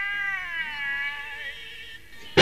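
A cat's long, drawn-out meow that slides slowly down in pitch and fades away.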